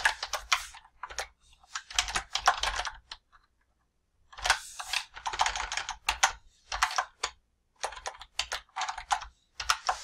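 Typing on a computer keyboard: bursts of quick key clicks, with a pause of about a second partway through.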